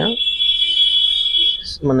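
A loud, steady high-pitched electronic tone, held for about a second and a half and then cutting off.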